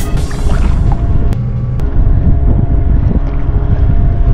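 Motorboat idling on the water, a steady low rumble with wind buffeting the microphone.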